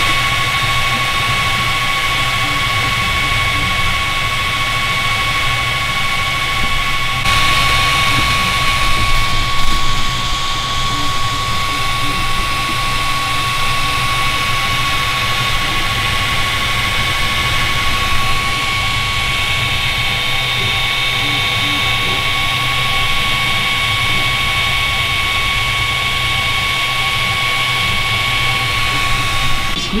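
Voxelab Aquila 3D printer running while printing: a loud, steady whir with a constant high whine.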